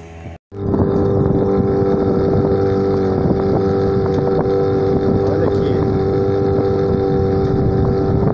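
Small outboard motor pushing a sailboat along, running steadily with one unchanging note, with wind on the microphone. The sound begins abruptly just under half a second in, after a cut.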